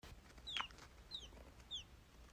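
A baby bird peeping faintly three times, evenly spaced, each peep a short, high note that falls in pitch.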